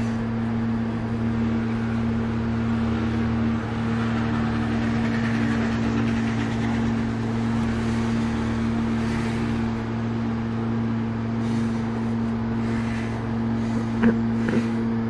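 A steady low machine-like hum: a constant pitched drone under a faint hiss, unchanging throughout.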